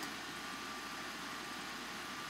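Steady low hiss of room tone with a faint steady high tone through it, and no distinct sounds.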